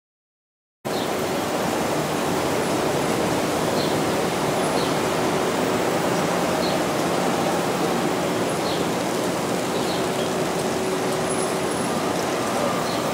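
Loud, steady hiss of static that starts abruptly after almost a second of dead silence and holds at an even level, with a faint steady hum under it.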